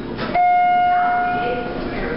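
Schindler hydraulic elevator's arrival chime: one clear ding about a third of a second in, just after a short click, ringing out and fading over about a second and a half over the car's low hum. It signals that the car has reached its floor and the doors are about to open.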